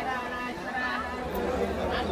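Indistinct chatter of voices, with no clear words.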